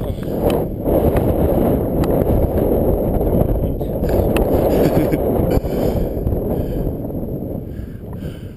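Wind rushing over the camera microphone as a mountain bike rolls over slickrock, with occasional sharp clicks and rattles from the bike. The rush eases off over the last couple of seconds.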